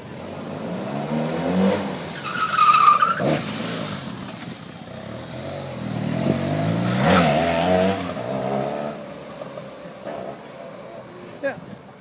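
BMW police motorcycle's boxer-twin engine revving up and down through tight low-speed turns. It is loudest twice, about two to three seconds in and again around seven seconds as the bike swings close by, with a brief squeal near three seconds.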